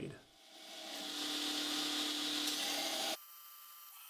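Belt grinder grinding the tip of a forged steel blade: a grinding hiss over a steady motor hum builds up and then cuts off abruptly about three seconds in. The tip is being ground to remove the tail of the weld line and reshape the point.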